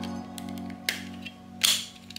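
Soft background music with sharp plastic clicks, one about a second in and a louder one near the end, from a safety-glasses lens being handled and pushed into its frame.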